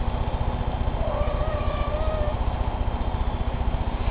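A kitten gives one faint, drawn-out mew starting about a second in, over a steady low rumble that pulses rapidly.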